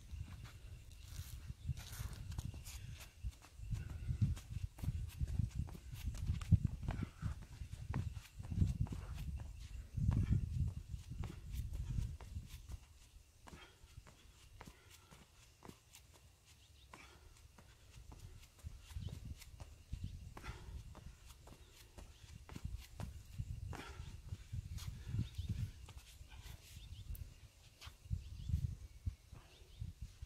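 Gusty low rumble of wind on the microphone outdoors, strongest in the first half, with scattered light taps and scuffs of a person exercising in sneakers on concrete.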